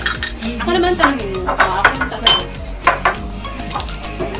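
Small ceramic dishes and cutlery clinking as plates are set down on a table, a run of sharp clinks, over background music and voices.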